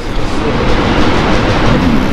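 A loud, steady rushing noise with no clear pitch.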